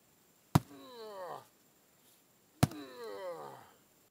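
Sledgehammer striking a rotten log twice, about two seconds apart. Each blow is followed by a pitched tone that slides down over about a second.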